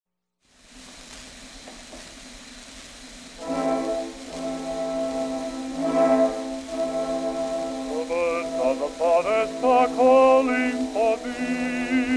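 Playback of a 1906 acoustic-era 78 rpm disc record. Faint surface hiss runs alone for about three seconds, then the small orchestra's introduction comes in with held chords, and a melody line with vibrato joins about eight seconds in.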